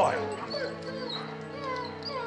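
A dog whimpering in several short, high, wavering whines over sustained background music.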